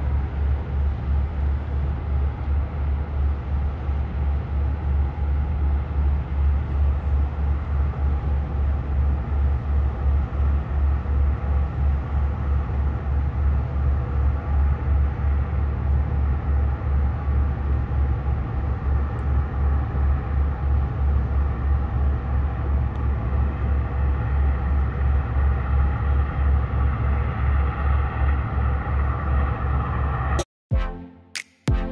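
Tug's diesel engine running under way as it pushes a large barge past, heard as a deep, even throb several times a second. A higher steady drone over it grows a little louder near the end as the tug draws closer.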